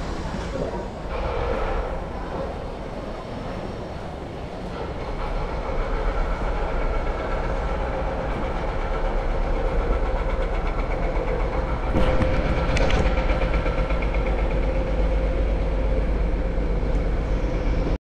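Steady low rumble with a sustained hum, typical of a large vehicle such as a passing train. It grows louder from about five seconds in, and a brief clatter comes about twelve seconds in.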